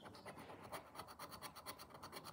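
Plastic poker chip scratching the latex coating off a paper lottery scratchcard in rapid, faint, repeated strokes.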